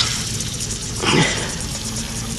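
Water turned on and rushing through a garden hose into a pressure washer pump's inlet, hissing where the hose fitting is not tightened all the way. A steady low hum runs underneath.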